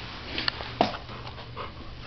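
Dog giving a few short, sharp cries: the loudest a little under a second in, a softer one about a second and a half in.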